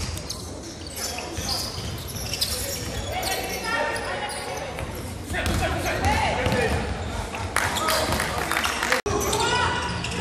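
Basketball being dribbled and bounced on an indoor court, a run of sharp knocks echoing in a large hall, with players and spectators calling out.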